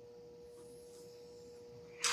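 Near silence: faint room tone with a steady, high-pitched hum on one note.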